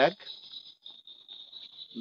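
Night insects, crickets or similar, keeping up a steady, high, pulsing chirr, with faint rustling of hands working at a jeans pocket.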